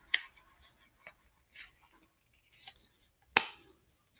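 Plastic phone case being handled: a few light clicks and one sharp snap a little over three seconds in, as the phone is fitted into the holster case.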